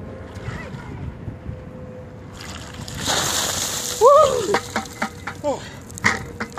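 A bucket of ice water dumped over a person's head: a rushing splash begins about two seconds in and lasts about a second and a half. It is cut off by a loud yelp at the cold, then further short cries of "Woo! Oh."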